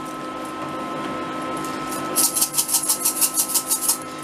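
Coins clicking rapidly against one another, several clicks a second, as a handful is tidied into a stack, starting about halfway through. Under it runs the steady hum of a coin pusher machine.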